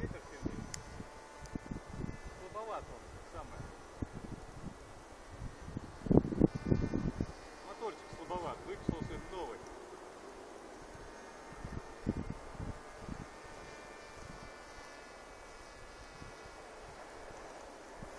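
Faint steady whine of a battery-powered electric RC flying-wing model's motor and propeller high overhead, with wind rumbling on the microphone. Short indistinct bits of voice break in about six to nine seconds in.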